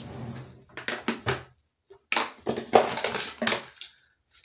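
Rustling and clattering of small makeup items and cardboard packaging being handled and picked up, in two spells of a second or so each with a short pause between.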